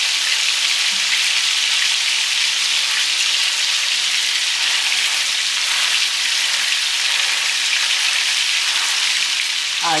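Meat patties sizzling steadily as they fry in a deep pan, an even crackling hiss.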